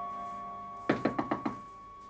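Five quick knocks on a glass-paned door, about a second in, over a single held note of background music.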